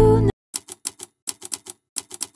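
Background music cuts off abruptly, followed by a quick, uneven run of about ten sharp typewriter keystroke clicks: a sound effect for letters being typed out on screen.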